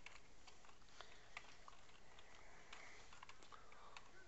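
Faint, irregular clicks of computer keyboard keys being typed, a few keystrokes spread across the seconds with short gaps between them, over a quiet room hiss.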